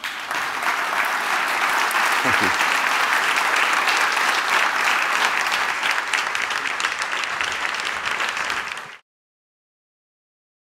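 Audience applauding: dense, steady clapping that cuts off abruptly about nine seconds in.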